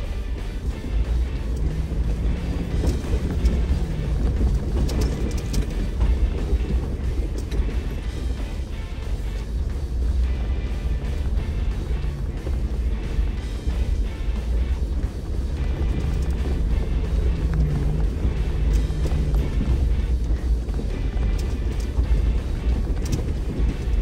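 Low, steady rumble of an off-road vehicle crawling over a rocky trail, heard from inside the cab, with music playing throughout.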